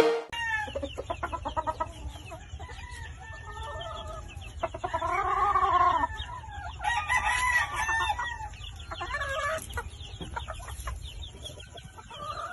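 Gamefowl roosters crowing among clucking chickens. One long, arching crow about five seconds in is the loudest, with shorter calls and clucks around it.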